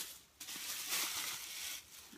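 Plastic shopping bags rustling and crinkling as they are rummaged through by hand, starting about half a second in.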